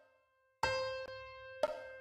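Flat.io score playback: a software grand piano sounds a sustained C semibreve over a metronome clicking once a second at 60 bpm. A click and a new C begin about half a second in, and the note fades slowly under another click a second later.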